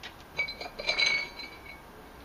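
A quick run of light clinks from hard objects knocking together, with a brief high ringing after them, loudest about a second in.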